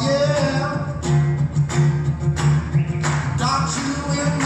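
Acoustic guitar strummed while several voices sing together in a live band performance.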